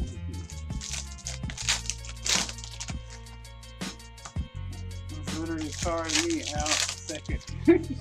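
Background music under the crinkling of foil trading-card pack wrappers and the quick flicking and clicking of cards being handled. A voice comes in for about two seconds past the middle.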